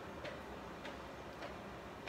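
Faint light clicks, four in two seconds at an even pace, over quiet room tone.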